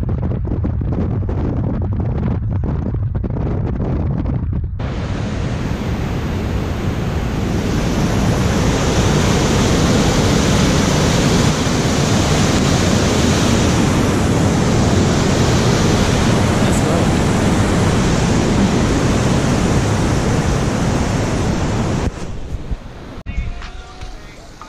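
Wind and road noise from a moving car for about five seconds, then a mountain creek rushing over boulders, a steady, loud rush of whitewater that cuts off near the end.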